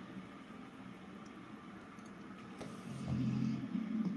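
A man yawning: faint and breathy at first, ending in a short, low voiced sound about three seconds in.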